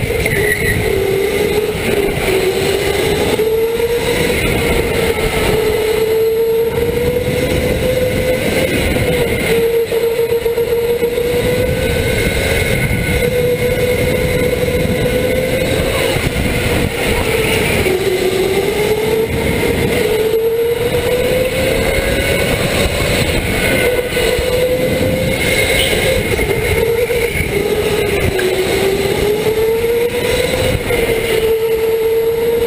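Electric go-kart motor whining from on board the kart, its pitch rising and falling as the kart speeds up and slows through the corners, over steady tyre and wind noise.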